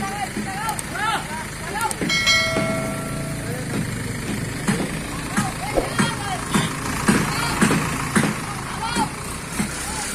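Heavy diesel engine of a hydra crane running steadily while it holds a load, with men's voices calling over it. A short steady horn-like tone sounds about two seconds in, along with scattered clicks and knocks.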